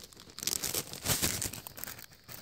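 A small plastic zip-top bag crinkling as it is handled, an irregular rustle and crackle starting about a third of a second in.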